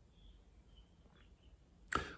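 A quiet pause with a few faint, short bird chirps in the background, and a short breath near the end.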